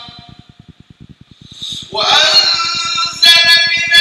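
A man's melodic Arabic Quran recitation during prayer, picked up by a lapel microphone. A pause of about two seconds, then a loud, long held phrase begins.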